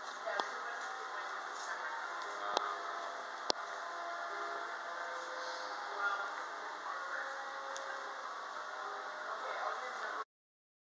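Indistinct background voices and store ambience, a steady murmur with no clear words. Two sharp clicks come about a second apart, a quarter to a third of the way in.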